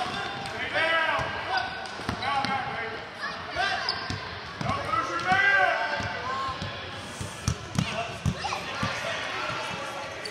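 A basketball bouncing on a hardwood gym floor as it is dribbled, several knocks clustered about halfway through and again near the end, with players and spectators calling out in the echoing hall.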